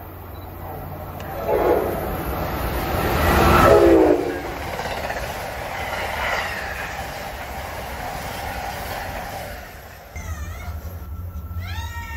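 Amtrak passenger train sounding its horn, loudest about four seconds in, then passing at speed with steady rushing wheel noise and rail clatter. Near the end the sound cuts to something different.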